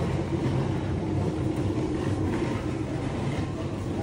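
Clothing being rummaged through in a thrift-store bin, with faint scattered rustles, over a steady low background rumble.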